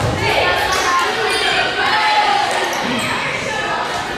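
A volleyball thudding on the hardwood gym floor, heard over the echoing chatter of players and spectators in the gym.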